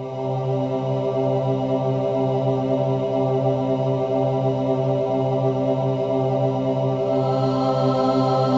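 Background music: a steady drone held on one low chord, without beat or rhythm.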